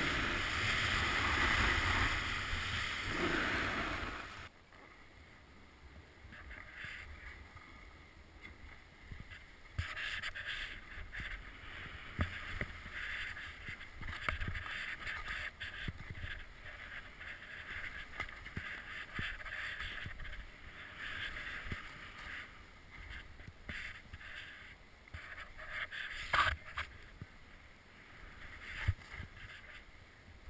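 Ski or snowboard descent heard from a helmet camera: a loud rush of wind and snow that cuts off suddenly about four seconds in. Then a quieter, uneven scraping and hissing of edges sliding over snow, with a sharp knock near the end.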